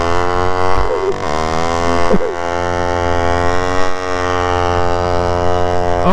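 Supermoto motorcycle engines held at high, steady revs, with a few brief rises and falls in pitch in the first two seconds, while the bike ahead spins its rear tyre in a smoking rolling burnout.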